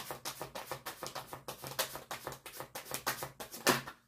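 A deck of tarot cards being shuffled by hand: a rapid, steady run of soft card-on-card clicks, about ten a second, with a louder one near the end.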